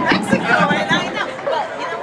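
Chatter of several people talking at once, with no single voice clear enough to make out words.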